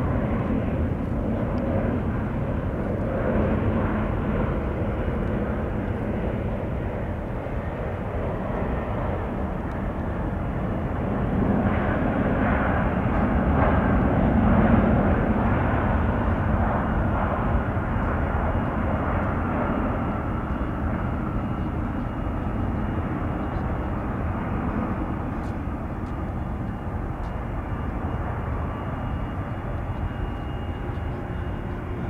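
Jet noise from an Airbus A350-1000's two Rolls-Royce Trent XWB engines as it touches down and rolls out on the runway: a steady rumble that grows louder for a few seconds about halfway through, then eases off.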